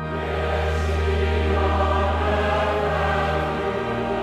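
Choral music with orchestra, entering at full volume right at the start and singing held chords over a sustained low bass note.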